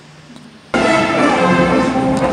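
Faint room tone, then about two-thirds of a second in a marching band's music cuts in suddenly and loudly, with several held notes sounding together.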